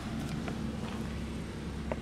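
Steady low background hum with a couple of faint clicks as a person climbs out of an SUV's back seat.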